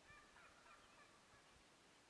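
Faint, distant wild turkey gobble, a quick broken run of calls lasting about a second near the start.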